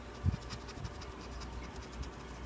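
The coating on a scratch-off lottery ticket being scraped away in quick, repeated short strokes, with a soft bump about a quarter second in.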